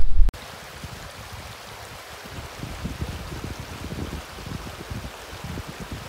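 Shallow creek running over gravel and stones: a steady rush of flowing water with low burbling. It follows a loud low rumble that cuts off a fraction of a second in.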